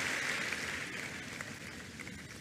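A large congregation's applause dying away, fading steadily through the first second and a half to a low hush.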